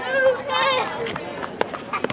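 Rugby players shouting on the pitch, one loud high-pitched call about half a second in, with a few sharp knocks later.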